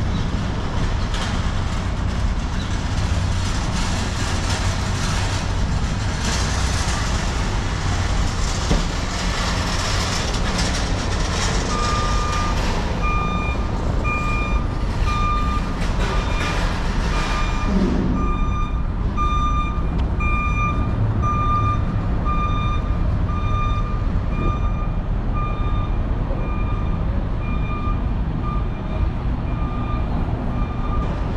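A vehicle's backup alarm beeping steadily about once a second, starting a little under halfway through, over the constant rumble of traffic on the elevated highway overhead.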